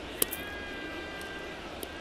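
A baseball popping once into the catcher's mitt, followed by a steady high whistle lasting over a second, over the hum of a stadium crowd.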